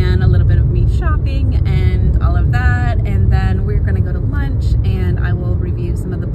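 A woman talking inside a car, over the steady low rumble of the car's cabin.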